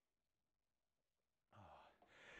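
Near silence, with a faint sigh from a man near the end.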